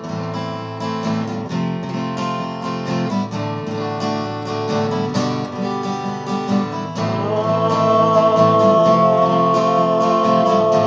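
Martin D28 dreadnought acoustic guitar playing the song's intro chords, with regular picked strokes. About seven seconds in, a man's voice joins with long held wordless "ah" notes over the guitar.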